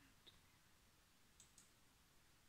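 Near silence: room tone with a few faint computer mouse clicks, one shortly after the start and a quick pair about one and a half seconds in.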